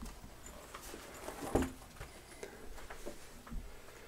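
Faint handling sounds of a backpack's hard-shell front lid being unfastened and swung open: light fabric rustle with a few small clicks and taps, one sharper knock about a second and a half in.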